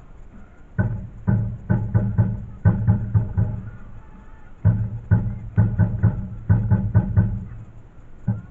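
Rhythmic drumming: two phrases of about nine deep, sharp strokes each, with a short pause between them.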